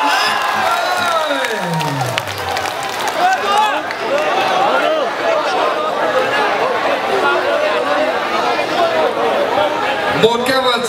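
Crowd of spectators shouting and cheering, many voices overlapping, with one long falling cry near the start. The crowd is reacting to the bout-winning move in a traditional wrestling match.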